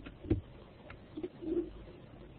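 A pigeon cooing in short low calls, with a sharp click about a third of a second in and a fainter click just before one second.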